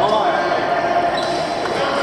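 Busy sports-hall din: many voices echoing in a large hall, with a court shoe squeaking on the wooden badminton court floor just at the start.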